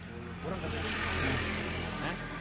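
A road vehicle passing by: a hiss that swells about half a second in and eases off toward the end, over a steady low engine hum.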